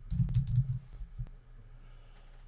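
Computer keyboard typing: a quick run of a few keystrokes in the first second, then a single keystroke a little after a second in.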